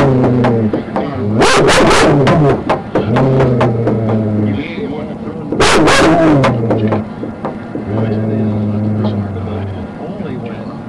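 A police dog barking and whining loudly close to the microphone, with the loudest bursts about a second and a half in and again around six seconds in.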